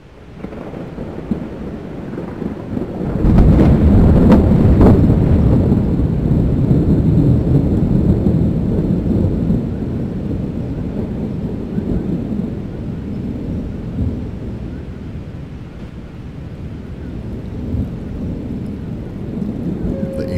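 Thunderstorm: rolling thunder that fades in, swells into a long heavy rumble about three seconds in, then eases off over a steady rush of rain.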